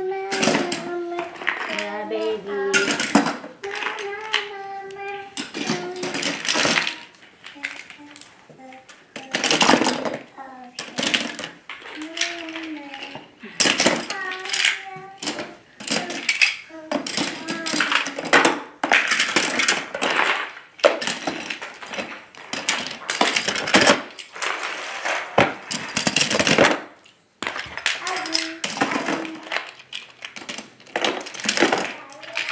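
Wooden and plastic toy trains clacking against each other as they are gathered up by hand and dropped into a plastic storage bin, in a run of uneven clatters. A voice is heard over it in the first few seconds.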